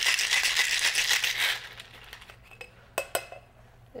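Ice rattling hard inside a metal cocktail shaker being shaken fast, for about a second and a half before it stops. Two sharp knocks follow near the end.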